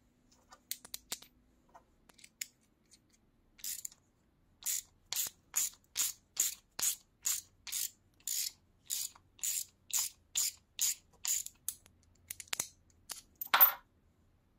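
Small workpiece being scraped by hand in about fifteen short, even strokes, roughly two a second. A few sharp clicks follow, then one louder scrape near the end.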